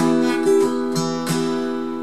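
Acoustic guitar with a capo, strummed about four times on one held chord that rings on and slowly fades.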